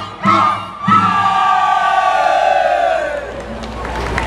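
Folk-dance music with strong beats stops about a second in, and a group of voices gives one long shout together that slides down in pitch and fades out over about two seconds.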